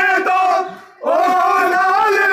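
Men's voices chanting a noha (Shia mourning lament) together on long held notes. The chant breaks off for a breath about half a second in and comes back on a held note at about one second.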